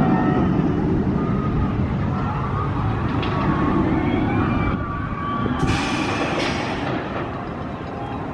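Bolliger & Mabillard hyper coaster train running along its steel track, a steady low rumbling roar that eases a little after about five seconds, with faint wavering high tones above it.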